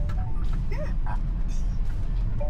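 Steady low road rumble inside a Tesla Model Y's cabin as the electric SUV rolls slowly, with a few short pitched sounds over it.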